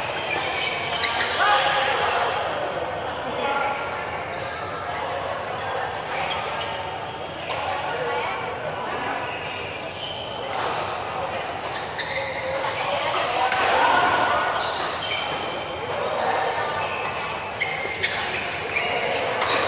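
Badminton rally in a large indoor hall: sharp racket strikes on the shuttlecock come at irregular intervals, with voices of players and onlookers echoing around the court.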